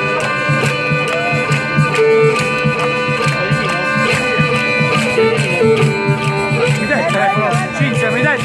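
Live folk band of accordion, violin, acoustic guitar and drums playing, with held notes over a steady beat.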